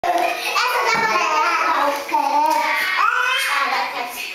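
A young child's high-pitched voice vocalising continuously, its pitch gliding and held on long notes in places.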